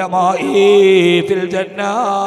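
A man's voice chanting in a drawn-out, sing-song preaching style, holding and gliding between notes, with a steady low hum beneath.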